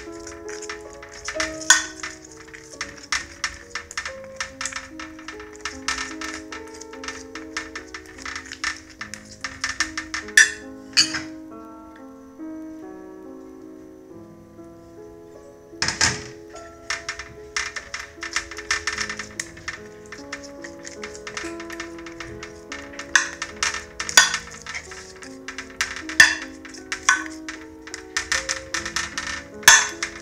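Background music with held notes, over a metal spoon repeatedly clicking and scraping on a glass baking dish as tomato sauce is spread, the dish clattering against the metal oven tray it sits in. The clicks stop for a few seconds around the middle, then resume.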